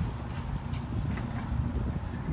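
Garage door closing under its opener motor, a steady low rumble.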